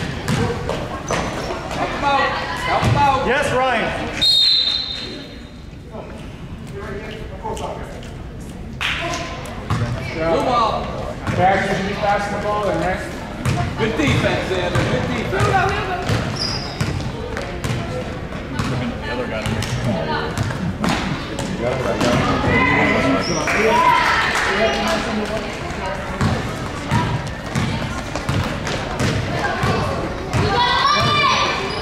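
A basketball dribbled on a wooden gym floor, repeated bounces under a steady hubbub of spectators' and coaches' voices echoing in the gym.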